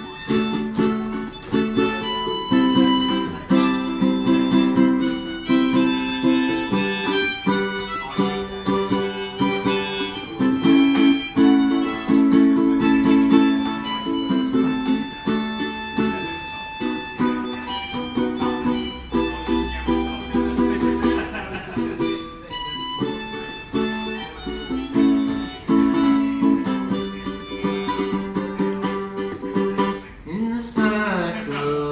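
Harmonica, played from a neck rack, blowing chords and melody lines over a strummed ukulele: an instrumental passage with no singing.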